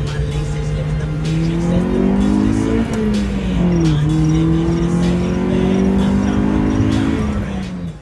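Car engine heard from inside the cabin, pulling hard with its pitch rising through a gear. About three seconds in it drops for an upshift, then climbs again through the next gear and eases off near the end.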